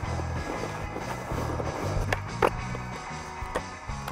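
A mini skateboard rolling on a hard court, with two sharp clacks of the board about two seconds in, a third of a second apart: the pop and landing of a 180. Background music with a steady bass line runs underneath.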